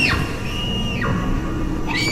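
Eerie film-score wailing: a high held tone that slides steeply down in pitch, sounding twice, with faint low rumble beneath.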